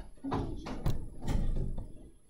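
Three short knocks or taps about half a second apart.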